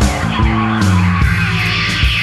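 Loud instrumental passage of an alternative-metal / psychedelic rock song, with electric guitar, bass and drums and no singing. The bass moves between held notes under a dense wash of guitar and cymbals.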